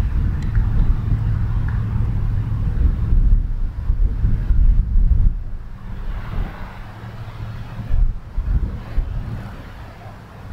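Gusty wind buffeting the microphone as a deep, uneven rumble, heaviest in the first half and easing off in the second.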